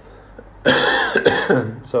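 A man coughing: a short fit of a few coughs lasting about a second, starting just past the middle.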